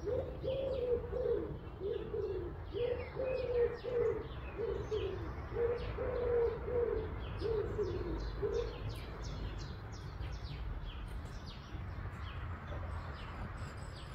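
Birds calling: a low cooing call repeated in short falling phrases, which stops a little past halfway, over steady high chirping from small birds.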